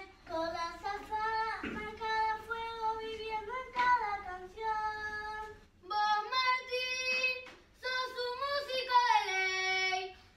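A group of children from a children's murga singing without accompaniment, in phrases of held notes with short breaks for breath about six and eight seconds in.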